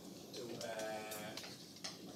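Chalk tapping and scraping on a blackboard as words are written, heard as short sharp clicks. About half a second in, the loudest sound is a drawn-out, slightly wavering tone that lasts about a second. Its source is unknown.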